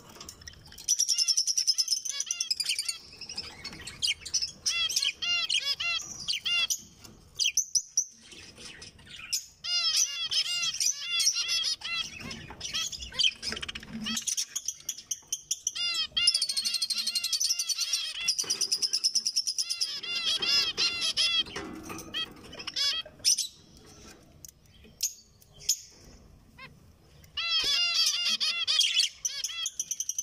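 Zebra finches singing: repeated bouts of song a few seconds long, strings of quick arching notes, with short quieter gaps between the bouts.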